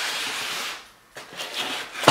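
Plastic wrap and cardboard packaging rustling and scraping as a laminator in its bag and end caps is handled. The noise dies away about halfway through, followed by a few faint handling sounds.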